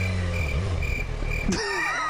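A motorcycle engine idles low and fades out within the first half second. A short high beep repeats about twice a second throughout, and a sharp click comes about one and a half seconds in.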